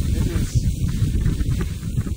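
Wind buffeting a phone's microphone aboard a small open motorboat running fast over choppy water, a loud rough rumble with no steady tone.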